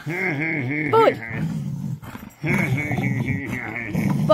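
A big dog growling in play while being roughhoused: two long, wavering, rolling growls with a short pause between them and a quick high yelp about a second in.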